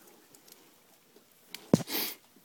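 Quiet close-up handling: a single sharp knock about a second and a half in, as a gloved hand or the phone bumps the bare engine parts, followed by a brief rustle.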